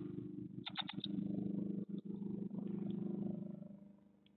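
Great tit nestlings giving a quick burst of four short, sharp begging calls about a second in. A louder low, steady drone runs underneath and fades out near the end.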